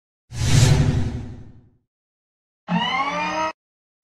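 Logo-animation sound effect: a whoosh hit that fades out over about a second and a half, then a short, slightly rising synthesized tone.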